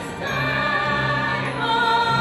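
A choir singing held notes in several parts, moving to new notes about a second and a half in.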